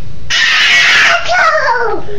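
A loud, rough, high-pitched shriek starts about a third of a second in, then slides down in pitch into a drawn-out whine near the end.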